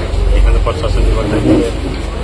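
A man talking, with a heavy low rumble underneath for about the first second.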